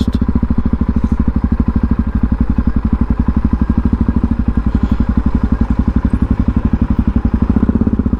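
Supermoto motorcycle engine running at low revs as the bike rolls slowly, heard close from the rider's position: a steady, even pulsing of about a dozen beats a second.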